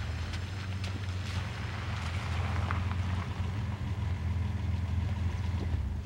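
Pickup truck engine idling, a steady low hum.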